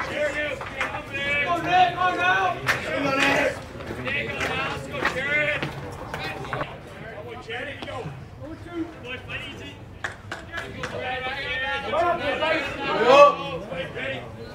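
Voices of people talking and calling out at a baseball field, loudest near the end, with a few sharp pops along the way.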